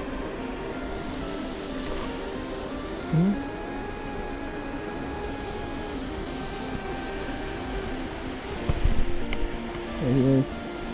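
Background music: steady repeating tones at an even level, with a short rising tone about three seconds in. Near the end comes a brief low rumble, like handling noise on the microphone.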